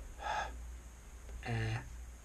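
A person's voice: a short breathy, gasp-like sound, then about a second later a brief low voiced sound held at one pitch.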